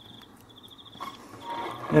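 Faint high-pitched insect trilling, a rapidly pulsing tone in a few short bursts.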